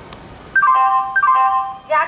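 Railway station public-address chime: a short electronic jingle of falling notes, played twice, announcing that a train announcement is about to follow.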